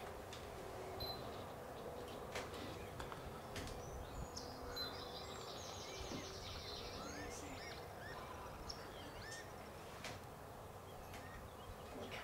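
Outdoor ambience with a steady background hiss and scattered high bird chirps, including a fast trill about four to five seconds in, plus a few faint clicks.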